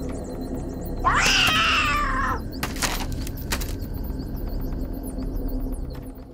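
A cat's single long, loud meow about a second in, gliding slightly down in pitch, over a steady low drone. A few sharp knocks follow shortly after.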